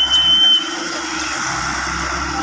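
Hitachi EX100 excavator's diesel engine running steadily under hydraulic load as the boom lifts and the bucket curls. A thin, high, steady whistle sounds for about a second at the start.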